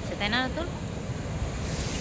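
Sea surf washing on a beach, with wind buffeting the microphone as a low rumble; a brighter hiss of surf comes in near the end.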